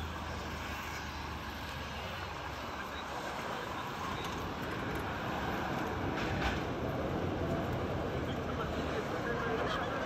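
Street ambience of road traffic along a seafront boulevard: a steady background of passing vehicles, with one vehicle going by in the first few seconds, its sound falling in pitch.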